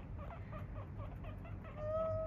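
Guinea pigs chutting: soft, quick clucking sounds, about five a second, the sound a guinea pig makes while trotting after its owner hoping for a treat.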